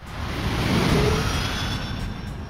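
A rushing whoosh sound effect, like a passing jet, that swells in sharply, is loudest about a second in, then eases off slightly.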